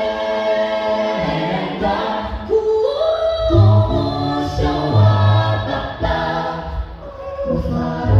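A cappella gospel group singing in Shona through microphones, women's and men's voices holding sustained harmony chords. A deep bass part comes in about three and a half seconds in.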